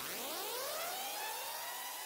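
A rising electronic sweep in the background music: several tones glide upward together and level off, quieter than the surrounding dubstep-style track.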